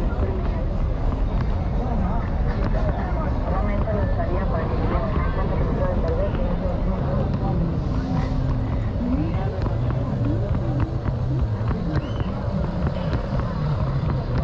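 Busy street-market ambience: several people talking at once close by, over a steady low rumble of traffic.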